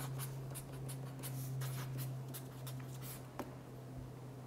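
Pen scratching on paper as someone writes: a run of short, faint strokes that ends with a sharper tick about three and a half seconds in. A steady low hum runs underneath.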